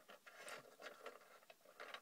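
Faint, irregular small clicks and scrapes from a Micro Machines toy missile-launcher truck being gripped and turned around by hand on a smooth tray.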